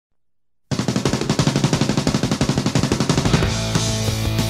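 Hardcore punk band recording kicking into a song after a brief silence: a rapid run of fast, even strokes from guitar and drums, then fuller sustained chords near the end.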